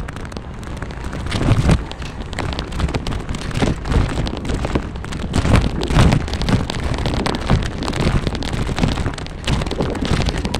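Continuous rolling and rattling noise of a bicycle ride over paved park paths, with irregular crackles and low rumbling bursts.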